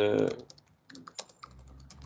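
Typing on a computer keyboard: a string of irregular key clicks.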